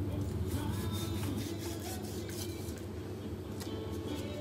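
A steady low hum with faint music in the background, and a few faint scrapes as a knife cuts through raw beef.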